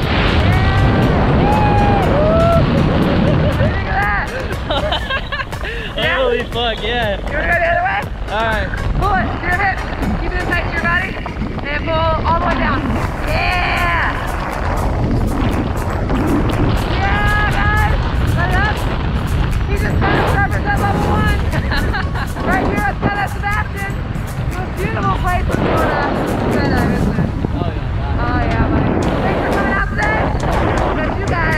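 Wind rushing over the microphone as the tandem parachute is pulled into a hard turn on its right steering toggle, with excited voices whooping and laughing over it.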